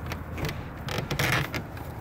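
Door hinges creaking as the house door is swung open, in two stretches: a short one near the start and a longer, louder one a little past the middle.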